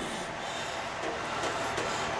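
Steady, even rushing background noise with no distinct knocks or tones.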